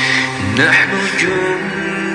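An Arabic nasheed: male voices singing held notes in a chant-like melody.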